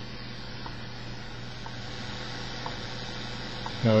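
Grundig 750 shortwave receiver tuned to WWV on 25 MHz, giving a steady hiss with a buzz and faint ticks once a second, the WWV seconds pulses, barely above the noise. The signal is very weak and at the noise floor.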